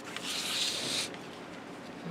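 A hand sweeping and rubbing across a sheet of cardstock: a dry rubbing of skin on paper lasting about a second.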